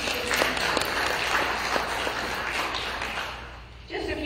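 Congregation applauding in welcome, many hands clapping at once, the clapping dying away near the end.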